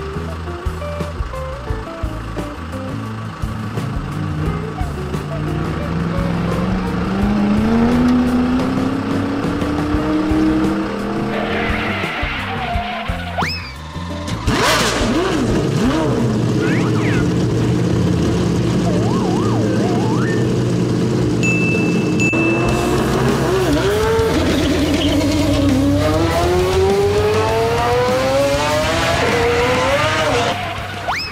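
Dubbed car engine sound effects revving up over background music, the engine pitch climbing steadily twice, for several seconds in the first half and again near the end. A short sharp noise about halfway through and a brief high steady tone a little later cut in.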